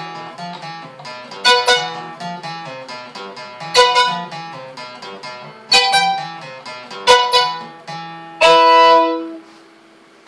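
An improvised duet of an acoustic guitar strummed in a steady rhythm and a fiddle playing loud held bowed notes over it every second or two. The playing stops about half a second before the end.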